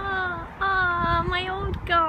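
A single voice singing a short run of high, held notes that step up and down in pitch.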